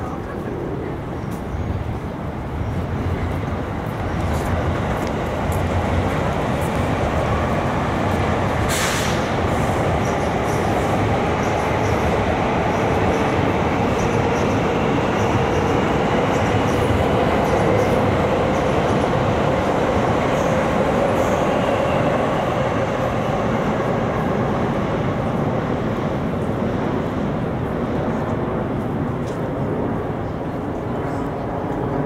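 A train passing on the rail line alongside the park: a long, steady rumble of wheels and running gear that swells a few seconds in and eases off near the end, with a faint pitched tone that drifts slowly. A single sharp click about nine seconds in.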